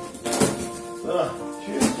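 Background music with steady held notes under a man's speech, with two short sharp clicks, about half a second in and near the end.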